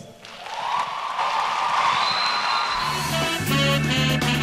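A studio audience applauding for about two and a half seconds, then music with a steady bass line and drum beat comes in.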